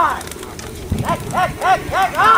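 Men shouting short, high 'hey' calls, each rising and falling in pitch: one loud call at the start, then a quick string of calls from about a second in, several voices overlapping. These are players calling their racing pigeons in to the landing frame.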